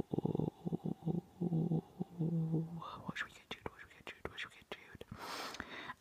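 A man's voice making short, low, choppy sounds without words for the first few seconds, then a run of sharp clicks, with a breathy hiss about five seconds in.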